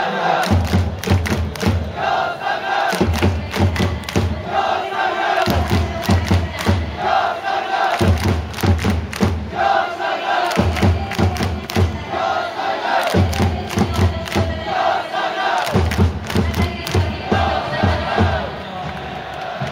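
Football supporters chanting in unison, singing a short phrase over and over about every two and a half seconds to the beat of a bass drum, with handclaps, after the final whistle.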